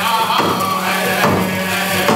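Native American dance song: voices chanting over a drum beat of about two strokes a second, with a steady low hum underneath.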